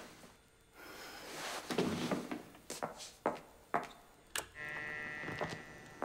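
Video playback equipment, a tape deck with a projector, starting up to screen a tape. A rushing swell is followed by several sharp mechanical clicks and knocks, then a steady high whine sets in about four and a half seconds in.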